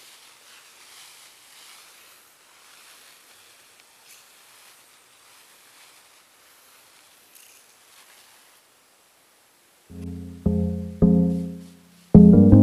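Faint hiss of a handheld pump-pressure garden sprayer misting liquid. About ten seconds in, background music with a run of struck notes starts and takes over.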